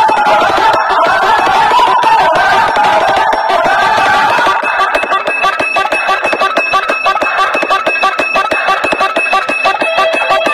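Loud music blaring from a stack of horn loudspeakers on a DJ sound-box rig, packed into the midrange with little bass. About halfway through a fast, steady beat takes over, with a thin high tone held above it.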